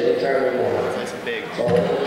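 A man speaking; the words are not made out.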